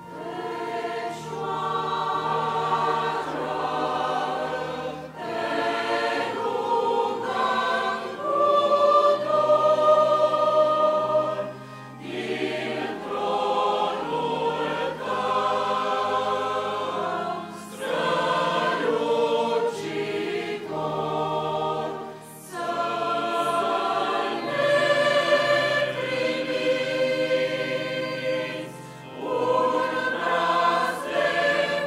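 A mixed choir of men's and women's voices singing in several parts, beginning at the very start and moving through phrases with short breaks between them.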